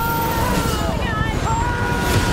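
A man screaming in two long, high held yells with a short wavering cry between them, over the rumble and rushing noise of a helicopter in flight.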